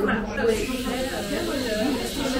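Background chatter of people talking in a busy café, with a brief hiss in the first half-second.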